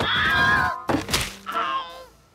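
Cartoon slapstick sound effects: a wavering, groan-like pitched sound, a thunk about a second in, then a short falling whine that fades out near the end.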